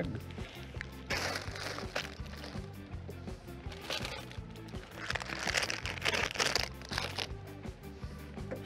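Plastic shopping bag crinkling and rustling in irregular bursts as a hand rummages through it, over quiet background music.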